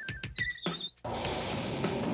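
Cartoon soundtrack music with sound effects: a warbling high trill that stops just after the start, a few short high gliding tones, then about a second in a steady rushing noise sets in as a vault-door wheel is cranked with a wrench.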